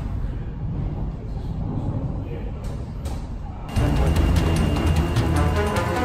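Sawmill board-line machinery running: a steady low rumble of the conveyors and transfer chains. About three and a half seconds in, this gives way abruptly to background music with a steady beat.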